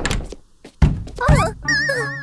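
Cartoon sound effects over music: a few heavy thuds about half a second apart, then a quavering, wavering high tone near the end.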